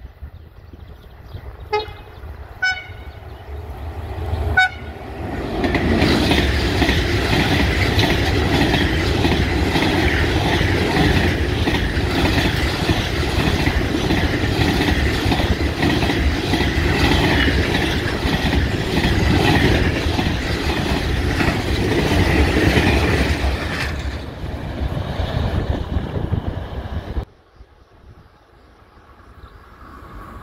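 Class 5600 electric freight locomotive sounding a few short horn toots as it approaches. Its container train then passes close by with loud, steady wheel-on-rail noise for nearly twenty seconds, which fades as the last wagons go by.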